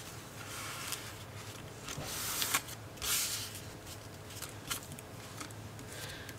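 Hands rubbing and pressing painter's tape down onto foam board inside the back of a canvas: a few faint, soft swishes of rubbing, the clearest about two and three seconds in.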